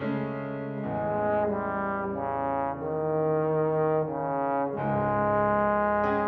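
Bass trombone playing a slow melodic phrase of held notes, stepping to a new pitch about every half second to second, over piano chords.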